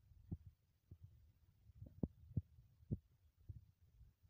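Faint low thuds at about a walking pace: the footsteps of the person filming, picked up through the handheld phone as they walk along a paved path, over a low rumble.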